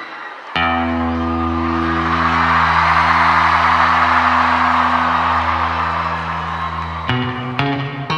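A band holds one sustained chord while the audience cheers, the cheering swelling and fading under it; about seven seconds in the band moves into the song's intro with a run of changing notes.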